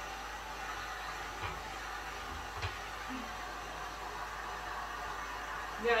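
Heat gun running steadily, blowing hot air onto a freshly cast head to dry off the water left in it, with a couple of faint knocks about one and a half and two and a half seconds in.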